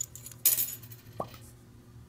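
Grey rubber stopper pulled out of the neck of a glass vial by hand: a short scraping burst about half a second in, then a brief rising squeak just past a second.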